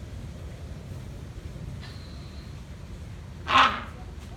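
Great hornbill giving one short, loud, harsh honk near the end.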